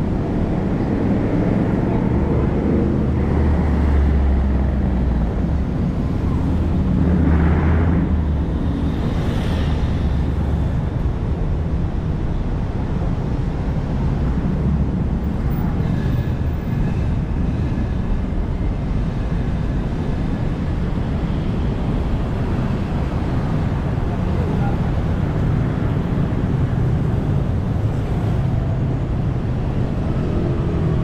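Steady road traffic from cars and motorbikes passing on a busy multi-lane city street. A heavier low rumble from a passing vehicle swells in the first ten seconds, then eases back to an even traffic hum.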